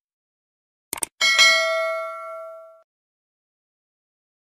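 Subscribe-button animation sound effects: a quick double mouse click about a second in, then a bright notification-bell ding that rings out and fades over about a second and a half.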